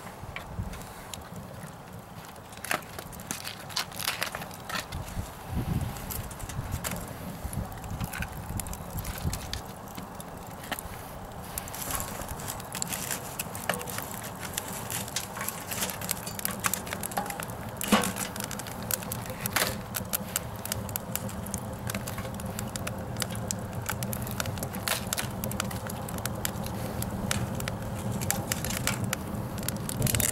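Wood fire crackling inside a steel camping wood stove, with many scattered sharp pops over a low steady rush, and one louder knock about eighteen seconds in.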